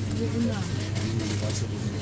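Faint background voices over a steady low hum.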